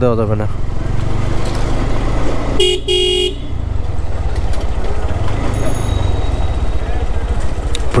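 GPX Demon GR165R's single-cylinder engine running at low speed in third gear. About two and a half seconds in, a vehicle horn beeps twice in quick succession, the second beep longer.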